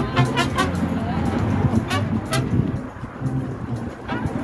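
Busy street ambience: people talking in a crowd, traffic passing on the road, and music playing in the background, with a few sharp clicks.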